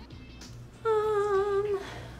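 A woman's voice holding one steady note for about a second, starting just under a second in, between fumbled takes.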